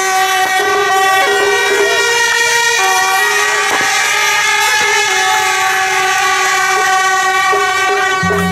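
A band of suona (Chinese double-reed shawms) playing a melody together in long, held notes that step to a new pitch every second or so, with a bright, reedy, horn-like sound.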